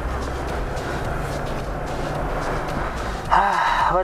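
Steady road and engine noise heard inside a moving car's cabin: an even low rumble with a hiss of tyres. A man's voice comes in near the end.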